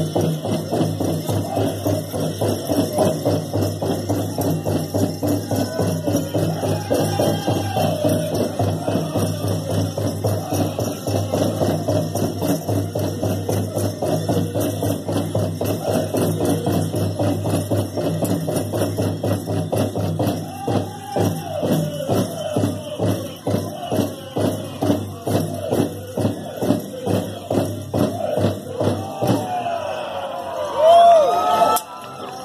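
Powwow drum group singing a fancy dance song in high wavering voices over a steady, even beat on a shared drum, with the jingling of dancers' bells throughout.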